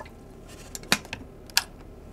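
Two sharp clicks from a stainless electric kettle, about a second apart: the lid snapping shut and the switch clicking on to heat water for tea.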